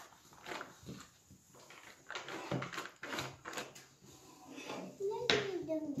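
Foil-paper butter wrapper crinkling in short, faint rustles as the butter is squeezed out of it, with a voice coming in near the end.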